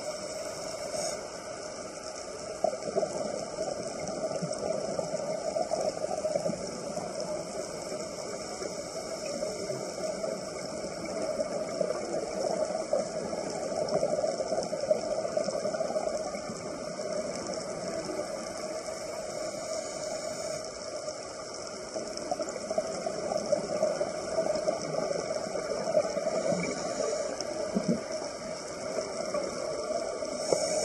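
Steady underwater ambient noise recorded by a camera below the surface: a continuous muffled wash with a hum in the middle range and a faint hiss above it.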